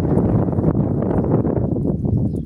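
Wind buffeting the microphone, a loud, steady low rumble, with faint crackles of a nylon fishing net being worked by hand.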